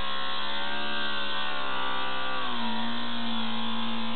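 Steady electric buzz of a Starship Satellite Coil magnet pulse motor spinning its magnet. Its pitch shifts slightly about halfway through.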